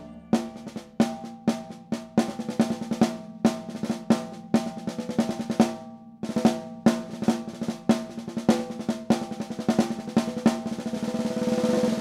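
Drum kit played with sticks, led by a Yamaha Recording Custom 14"x6.5" aluminum-shell snare: a groove of sharp snare hits over bass drum, several strikes a second. It builds into a snare roll that swells in loudness over the last two seconds.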